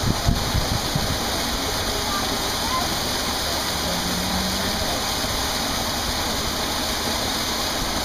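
Steady rush of running water, with a couple of low bumps right at the start.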